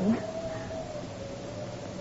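A faint, steady high tone held without a break under the hiss of an old recording.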